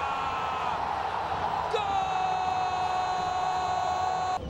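A football commentator's long drawn-out shout of "gooool" for a goal, held on one note that slowly falls in pitch. It breaks off about a second in, and a second long held cry starts a little before the middle.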